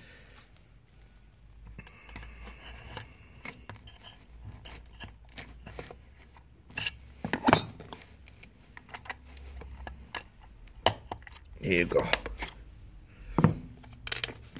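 Scattered clicks, ticks and light scrapes of a metal hand tool prying and pushing the plastic die and spacer of a manual curtain grommet press, with a sharper knock about seven and a half seconds in and another near the end.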